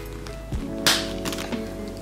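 Background music, with a short tap about half a second in and a louder sharp knock about a second in as the flap of a full black leather shoulder bag with gold hardware is pressed shut.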